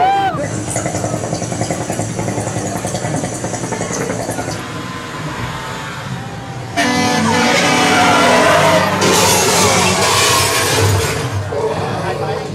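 Haunted-maze soundtrack played loud: a steady horn-like blare with a high hiss of air for the first few seconds. About seven seconds in it jumps to a louder wash of sound effects and voices.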